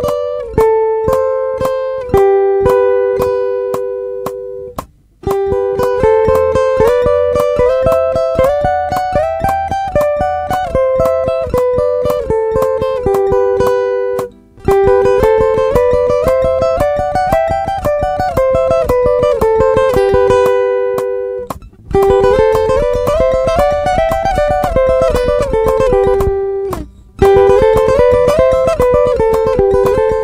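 Acoustic guitar playing a fast repeated lick in thirds, two notes sounding together as the phrases climb and fall. The lick breaks off briefly four times and starts again.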